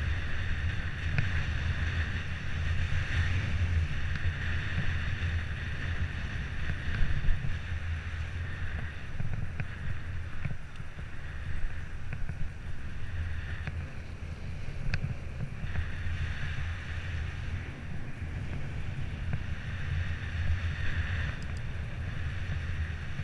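Wind buffeting the microphone over the rolling tyre and road noise of a moving bicycle, with a few faint short clicks.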